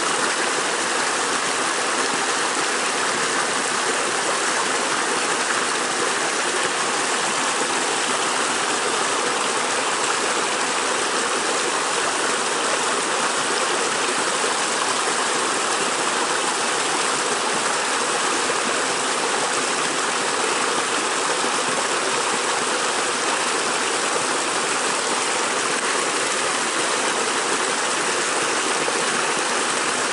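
Shallow creek water flowing and rippling over stones, a steady rushing sound.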